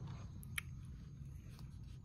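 A plastic spoon stirring cottage cheese in a plastic cup, giving a few faint soft clicks over a low steady room hum.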